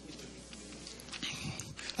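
A pause in speech: quiet hearing-room background with a low steady hum and faint, indistinct voices in the second half.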